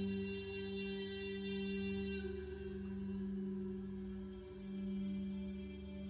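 Meditation background music of sustained singing-bowl tones: a low steady hum that slowly swells and fades, with several higher ringing tones above it, some giving way to others partway through.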